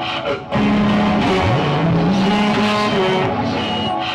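Live experimental electronic noise music from a band playing synthesizers, electronics and electric guitar: dense layered noise over low droning tones with sliding pitches. The sound drops out briefly about half a second in, part of a pattern that repeats about every four seconds like a loop.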